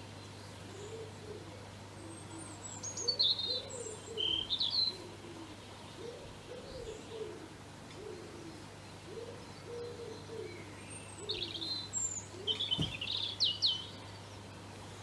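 Birdsong: a pigeon cooing in low, repeated phrases throughout, with two bursts of high chirping from a small songbird, about three to five seconds in and again near the end.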